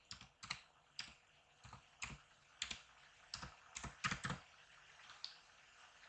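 Computer keyboard typing: about a dozen separate keystrokes at an unhurried, uneven pace, faint.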